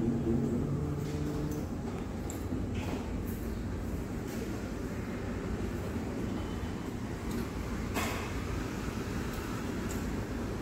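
Electric linear actuator of a dental chair running steadily as the chair is driven from its foot control switch. A short click comes about eight seconds in.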